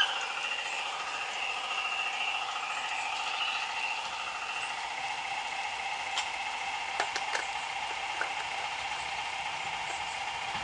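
Small diesel-engine sound module in an LGB garden-railway locomotive playing a steady, tinny idling chug through its small loudspeaker, with a fast even beat. A few sharp clicks come about six to seven seconds in. The sound is judged not to suit this locomotive.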